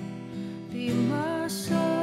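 Acoustic guitar strummed in a slow worship song, with a woman singing a held, gliding melody over it.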